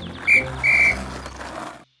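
Police whistle blown twice: a short blast, then a longer one.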